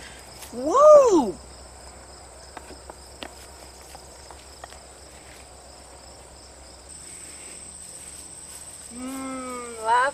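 A woman's single drawn-out 'ha' laugh, rising then falling in pitch, followed by quiet outdoor ambience with a steady high insect trill and a few faint clicks. Near the end her voice comes back in a sing-song, gliding hum.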